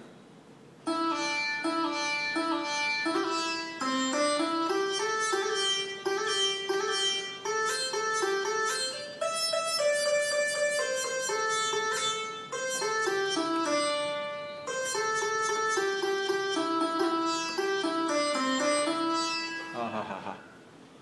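Sitar sound played on an electronic keyboard: a single-line melody of separate plucked notes in raga Mohana, starting about a second in after a short pause.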